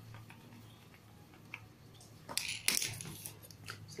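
Faint clicks of a screwdriver working the guard screw on an angle grinder, then a short burst of louder metal-and-plastic clattering a little over two seconds in as the tool and screwdriver are handled and set down.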